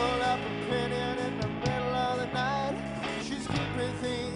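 A rock band playing live: a steady bass line under guitar, with a melody line that slides and bends in pitch.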